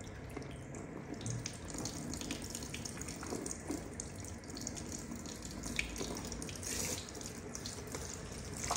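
Water running from a handheld shower sprayer onto a person's face and hair over a shampoo basin: a steady spray with splashing, drips and small ticks.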